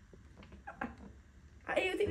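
A few faint light clicks from a small plastic case being handled, then a girl's voice starts loudly near the end.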